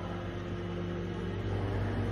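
Steady low background hum and hiss between spoken phrases, with a couple of faint held tones, from the recording's room or equipment noise.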